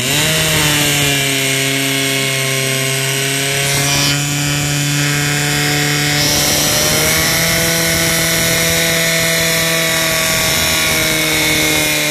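Portable fire pump's engine running flat out, a loud steady drone, as it drives water through the laid-out hoses to the nozzles. It revs up at the start and its pitch rises a little about six seconds in.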